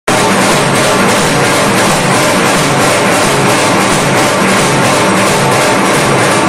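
Dhak drums, the large two-headed barrel drums of Durga Puja, played by two drummers in a fast, dense, unbroken beat; loud.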